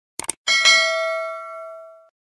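Sound effect of a quick mouse double-click, then about half a second in a single bell ding that rings out and fades over about a second and a half.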